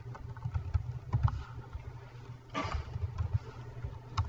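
Computer keyboard typing: scattered keystrokes with dull low thuds, over a steady low hum.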